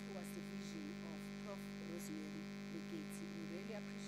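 A steady electrical hum with a stack of many pitched overtones runs underneath, with a woman's voice speaking through it.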